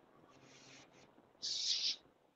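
Near silence, then a short soft hiss about one and a half seconds in.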